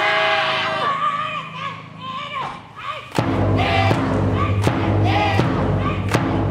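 Cheering squad's long shouted call. About three seconds in, a brass band with trumpets and a big bass drum strikes up loudly, the drum beating steadily a little faster than once a second.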